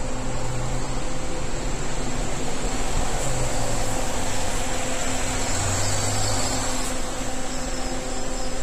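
MAN single-deck city bus driving past below and pulling away, its engine running low under a steady droning hum.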